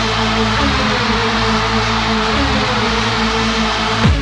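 Early-1990s techno/hardcore dance music in a beatless stretch: held synth tones over a loud, hiss-like wash, with no kick drum.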